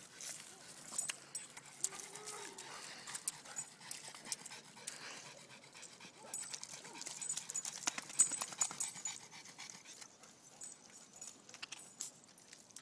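A dog panting as it moves and noses about in wet mud, with scattered squelching, splashing clicks from its paws in the mud; the loudest squelch comes about eight seconds in.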